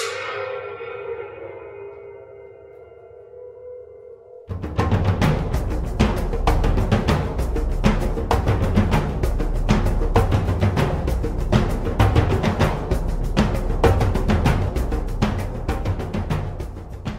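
A hand-held metal cymbal, struck just before, rings with several clear tones and slowly fades until it cuts off about four and a half seconds in. Percussion music led by drums then starts with a steady beat of dense hits.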